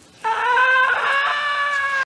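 A single long, high-pitched note starts about a quarter second in and is held for nearly two seconds, sinking slightly in pitch.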